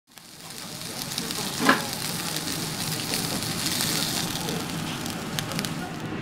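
Wagyu hamburger steak patty sizzling on a hot ridged grill pan, a steady sizzle fading in over the first second. A short, loud pop comes about one and a half seconds in, and a few sharp crackles near the end.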